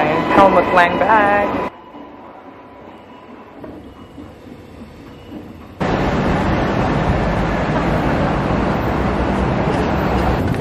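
A wavering, pitched sound for the first second and a half gives way to quiet station ambience. From about six seconds in comes a loud, steady rush of city street and traffic noise.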